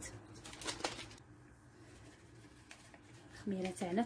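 A few light clicks of a spoon against the mixing bowl about a second in, then quiet room tone; a woman starts speaking near the end.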